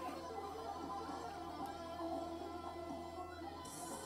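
Quiet electronic game music from a Merkur slot machine: a simple melody over a steady low hum, and the hum stops shortly before the end.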